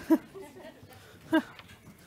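Short bursts of laughter: two quick chuckles at the start and another at about a second and a half, over quiet room noise.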